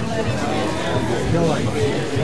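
Several people chatting at once, with music playing quietly underneath.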